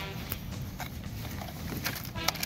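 A cardboard burger box and a paper fast-food bag being handled: a few short taps and rustles, scattered.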